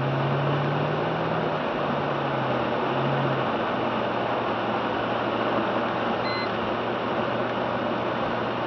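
Car driving on a wet highway, heard from inside the cabin: a steady rush of tyres and road noise, with a low engine hum that shifts in pitch over the first few seconds. A short high beep sounds once, about six seconds in.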